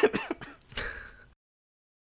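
A person's brief non-speech vocal sounds, the tail of a laugh and a breathy throat sound, then the audio cuts off abruptly to dead silence about a second and a half in.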